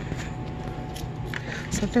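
Steady low hum of shop background noise with a few faint clicks. A woman starts speaking near the end.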